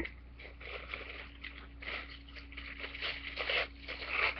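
Tissue paper rustling and crinkling softly as it is picked up and handled, in short irregular rustles over a faint steady hum.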